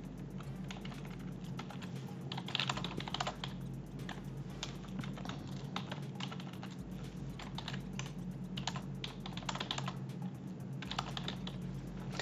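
Typing on a computer keyboard: quick, irregular key clicks, with a steady low hum underneath.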